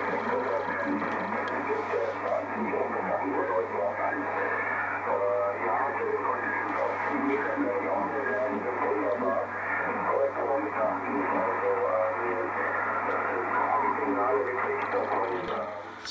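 Speech coming over an amateur radio transceiver's loudspeaker: an operator talking on the net in narrow-band, thin-sounding audio, with a steady low hum underneath.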